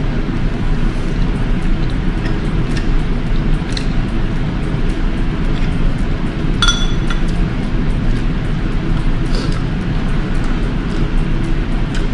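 Close-up eating sounds: noodles slurped and chewed, with a few small clicks of a fork and one clear clink of the fork against a bowl about two-thirds of the way through.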